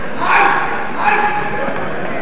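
Spectators shouting during a wrestling match: two short, loud, high-pitched yells, one about a third of a second in and one about a second in, over steady crowd noise in a gym.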